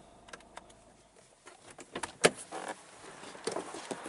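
Clicks and knocks from inside a car as its door is opened and someone climbs out, with the loudest sharp clack a little over two seconds in, then rustling.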